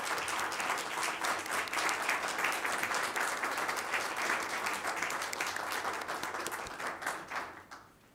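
A small group of people applauding, the clapping thinning out and stopping shortly before the end.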